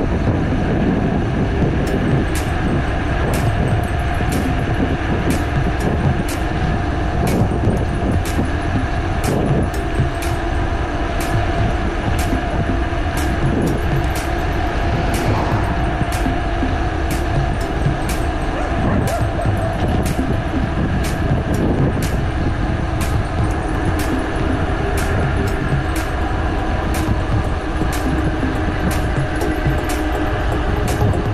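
Steady wind and road rumble from riding a bicycle on asphalt, picked up by a handlebar-mounted camera. A light tick repeats at a regular pace, about three every two seconds.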